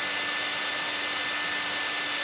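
Panasonic EH-NA45 hair dryer running steadily on its higher fan speed with medium heat: an even rush of air with a steady hum.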